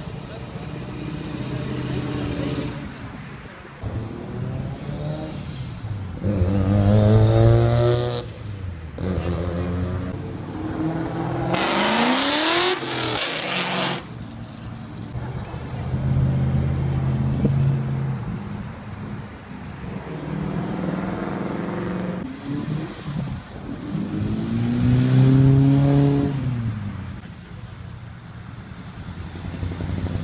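A string of cars driving past one after another and accelerating away, each engine revving up in a rising pitch as it passes, then fading. Among them are a classic red Ford Mustang, a wide-bodied off-road rally car and a blue 1960s Ford pickup. The loudest passes come about a quarter of the way in, just before the middle and again late on.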